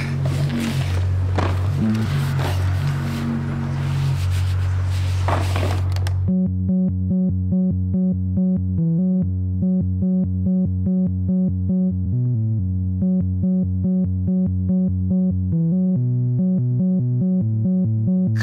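Instrumental passage of a song. A dense, full mix over sustained bass notes thins out suddenly about six seconds in, leaving a pulsing pattern of low and mid notes at about four a second.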